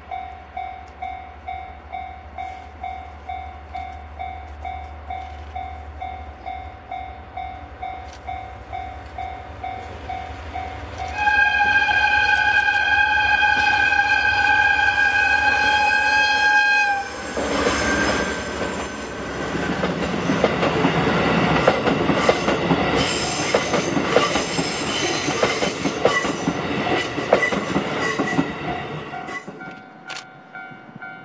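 A steady, evenly pulsing ding, typical of a level-crossing warning bell, sounds as a DE10 diesel locomotive approaches. About eleven seconds in, the locomotive sounds a loud, steady horn blast of about six seconds. The locomotive and its 35-series passenger coaches then pass close by, with the wheels clicking over rail joints, and the sound fades near the end.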